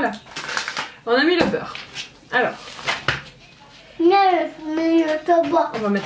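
Speech: a young child talking, with the words not made out.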